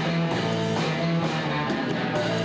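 Live rock band playing, with electric guitar holding steady chords over drums and cymbals.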